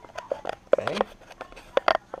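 Handling noise from a handheld multimeter and its test leads: a quick, uneven run of sharp clicks and taps, the loudest about three-quarters of a second in and again near the end.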